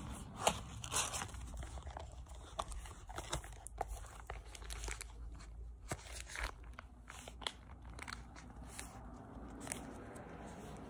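Close handling sounds: irregular crinkling, rustling and sharp clicks as a paper coupon, wallet and bag are handled close to the phone's microphone, loudest about half a second and a second in.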